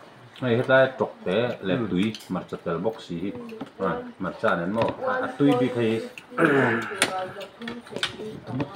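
Men talking over a meal, with a single sharp clink of tableware about seven seconds in.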